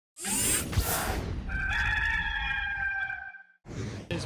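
Intro sound effect: a rushing swoosh, then a rooster crowing once, its held call lasting nearly two seconds before fading. Another brief rush of noise comes near the end.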